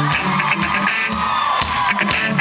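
Live rock band playing through a club PA, recorded from the audience, with crowd noise mixed in. One long high note is held over the band, sagging a little in pitch near the end.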